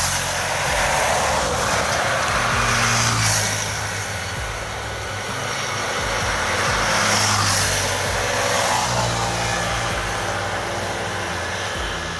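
Road traffic passing close by: vehicle noise swells and fades twice over a steady low engine hum.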